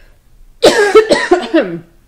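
A woman's coughing fit: a loud run of several quick coughs starting about half a second in, into her fist.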